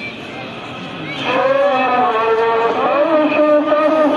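A man's voice chanting devotional recitation in long, drawn-out melodic notes, which comes in loudly about a second in over quieter talk.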